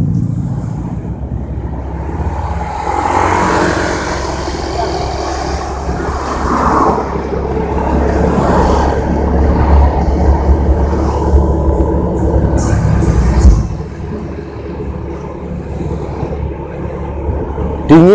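Road noise of a ride along a town street: a steady low rumble of wind and engine on the rider's microphone, with passing traffic, easing off about fourteen seconds in.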